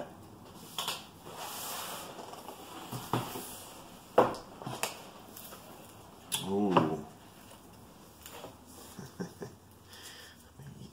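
A cardboard knife-set box being opened and handled: rubbing and rustling of the lid and insert, with several light knocks and one sharp click about four seconds in. A short vocal sound comes a little past the middle.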